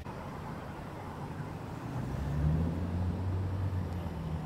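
Car engine and road noise heard from inside the cabin while driving: a steady low hum that grows louder and a little higher about halfway through, as the car picks up speed.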